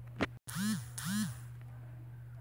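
Two short wordless vocal sounds, each rising then falling in pitch, about half a second apart, over a steady low hum; a sharp click comes just before them.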